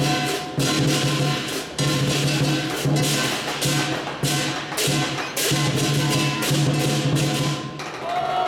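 Lion dance percussion: a deep booming drum and crashing cymbals playing a steady, loud beat. The beat stops just before the end.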